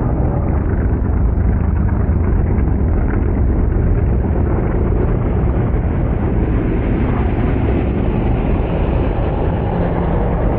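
Hobby stock race car engines running together in a steady, loud drone.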